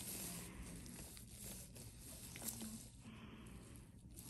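Near silence: faint room hiss with a few soft clicks.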